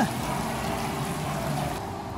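Mall fountain water running steadily over the edge of a coin-filled pool into a metal drain grate, a steady rushing hiss that stops abruptly near the end.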